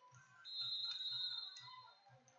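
A high, steady tone, like a whistle or beep, starts about half a second in and holds for about a second and a half.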